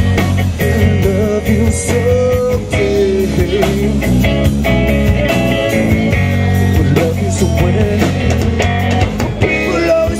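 A live rock band playing full out: electric guitars over bass and a drum kit, with a wavering melodic line on top.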